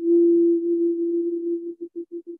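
Shakuhachi mood music: a single long, pure held note that breaks into short stuttering pulses near the end, as if the streamed audio were dropping out.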